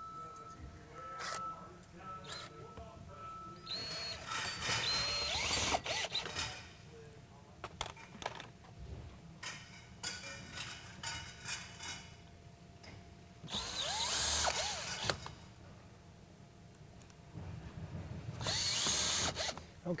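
Cordless drill driving three self-drilling, self-tapping screws to fasten a panic device's bottom latch bracket to the door. The drill whines in three short runs, about 4, 14 and 19 seconds in, with small clicks of handling between them.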